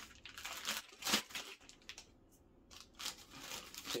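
Clear plastic packaging bag crinkling and rustling in irregular bursts as it is handled around a pair of wheel spacers.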